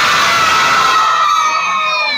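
A class of schoolchildren cheering together in one long, high-pitched, held shout of many voices.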